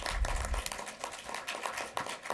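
A small audience applauding: a dense patter of scattered handclaps from a dozen or so people, with a low rumble in the first half second.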